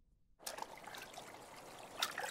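Faint trickling water, starting about half a second in after a moment of silence.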